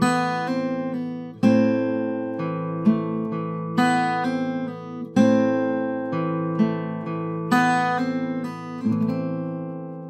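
Eastman AC-508 steel-string acoustic guitar played with Travis picking (pick plus fingers): a steady alternating bass under plucked treble notes at a slow tempo, each note left to ring. The last chord fades out near the end.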